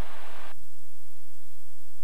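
Piston engine and propeller of a Cirrus SR20 heard inside the cabin as a steady low drone, running at about 52% power on the approach. The higher hiss over the drone drops away about half a second in.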